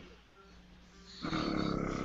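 Small airbrush compressor feeding a marker airbrush, switching on about a second in and then running with a steady, pulsing buzz.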